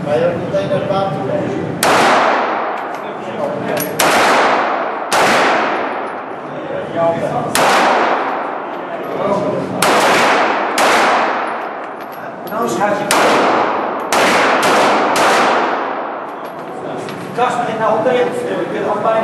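About ten pistol shots fired at an irregular pace, one to two seconds apart with a few quicker pairs, each crack followed by a long echoing tail from the indoor range's hall.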